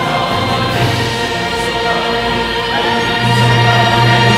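Singers at microphones singing sustained notes over an accompanying orchestra of bowed strings, swelling a little about three seconds in.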